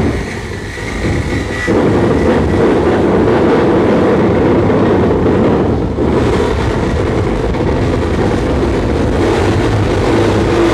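Live harsh noise from an effects-pedal and electronics rig: a loud, dense wall of distortion, heaviest in the low end. It thins out at the very start and comes back in full within two seconds, with a brief dip about six seconds in.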